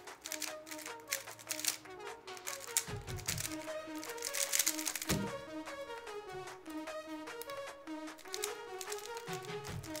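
Background music with a repeating melody over the rapid clicking of a MoYu Weilong WRM V9 BallCore UV speedcube being turned during a fast solve, followed by typing on a laptop keyboard.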